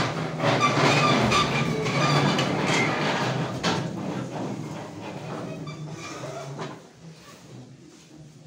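Chairs scraping and squeaking across the floor, with shuffling and rustling, as a room of people stands up. The noise is loudest in the first few seconds and dies away near the end as everyone stands still.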